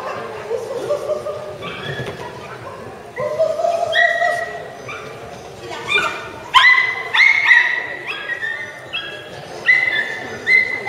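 Small terrier barking in short, high-pitched yips while it runs an agility course, the barks coming thick and loud in the second half.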